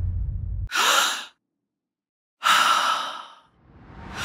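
Breathy exhalation sounds, like sighs or gasps: a short sharp one about a second in and a longer one that fades out, with dead silence between them. A low rumble cuts off just before the first.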